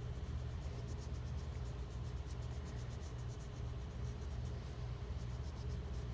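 Colored pencil shading on paper in quick back-and-forth strokes, a soft repeated scratching, over a steady low hum.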